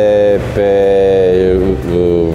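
Speech only: a man talking in Romanian draws out one syllable for over a second, with background music underneath.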